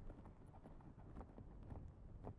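Faint footsteps of boots on asphalt: a person walking at an unhurried pace, a step roughly every half second.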